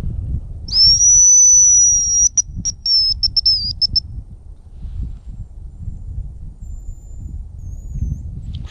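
Hazel grouse decoy whistle blown close to the microphone, imitating a hazel grouse cock's song: one long, very high, thin whistle, then a quick run of short broken notes, ending about four seconds in. Wind rumbles on the microphone underneath.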